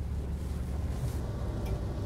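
Van engine and road noise heard from inside the cabin while driving: a steady low rumble.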